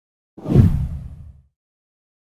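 A single deep whoosh sound effect that swells in just under half a second in and fades out over about a second.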